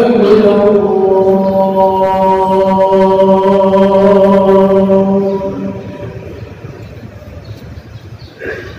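A man's chanting voice holding one long, steady note that fades out about five and a half seconds in, leaving a low murmur of the crowd.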